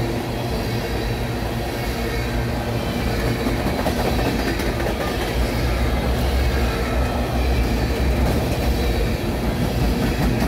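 Freight cars of a BNSF train rolling past close by: a steady rumble of steel wheels on the rails, with faint high wheel squeal.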